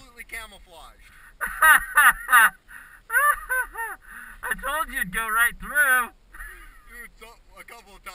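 Geese honking in quick runs of three or four loud calls, each call rising and then falling in pitch. The runs come about a second and a half in, again around three seconds, and again around five seconds.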